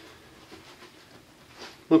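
Quiet room tone, a faint even hiss with no clear event, until a man's voice begins right at the end.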